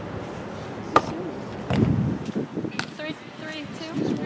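A single sharp smack about a second in, with people talking in the background.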